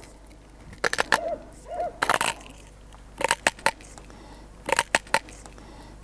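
Pocket knife cutting and scraping into pine wood, hollowing out the bell mouth of a shepherd's flute. The short strokes come in small clusters about every second.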